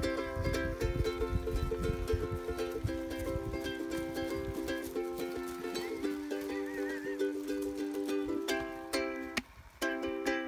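Ukulele strummed in steady chords as an instrumental close to the song, the chords changing a couple of times; the strumming breaks off briefly near the end, then one last chord.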